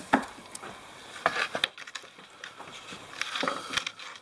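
Handling noise: a few light, sharp knocks and clicks, spaced irregularly, as hands move a foam tile-backer board set on an OSB sheet.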